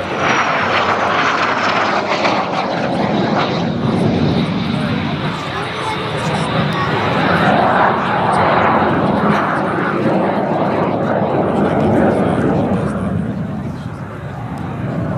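Aero L-39C Albatros jet trainer's Ivchenko AI-25TL turbofan in flight during an aerobatic display: a loud, steady rushing jet noise with a high whine that drops in pitch over the first second or two, then holds, the overall level swelling and easing as the jet manoeuvres.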